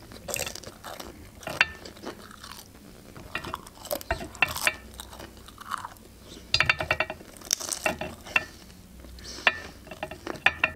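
Close-miked chewing and crunching of pan-fried pelmeni dumplings: irregular wet clicks and crunches, with a busier stretch of crunching a little past the middle.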